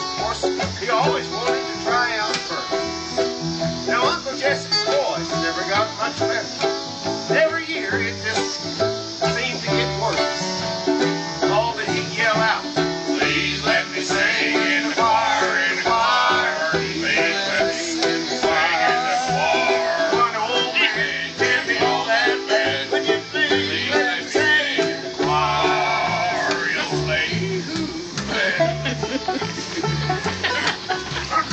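Bluegrass band playing: five-string banjo picking over upright bass, with acoustic guitar strumming along.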